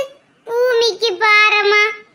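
A high-pitched, child-like cartoon character's voice, one drawn-out sing-song phrase that starts about half a second in and holds a steady high pitch toward the end.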